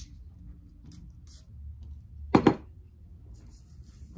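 One short spray from a Marc Jacobs Perfect perfume bottle's pump atomiser onto the wrist, a little past halfway through, the loudest sound in an otherwise quiet room. Faint rubbing of wrists together follows near the end.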